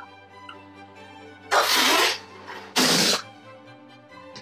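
Background music with two loud bursts of breathy rushing noise about a second apart, the first longer than the second.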